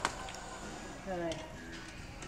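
A single sharp click from a screwdriver being worked at the lower edge of a car's door trim panel, followed by faint small ticks.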